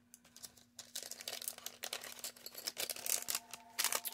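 Clear plastic packaging bag crinkling and crackling in the hands as small resin charms are handled in it, a quick string of small crackles starting about a second in.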